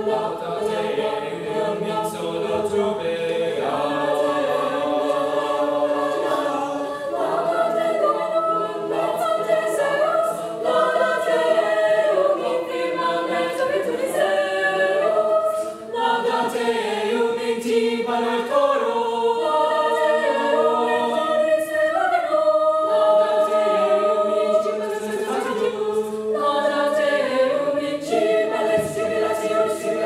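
A mixed choir of male and female voices singing in harmony, holding long chords that shift every second or two, with a brief breath about halfway through.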